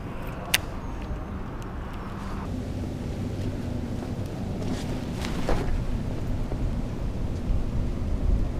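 A steady, low outdoor rumble with no voices. There is a single sharp click about half a second in, and a faint steady hum comes in about two and a half seconds in.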